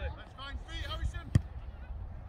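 A football kicked once on the pitch, a single sharp thump about a second and a half in, over faint shouts of players and a low rumble.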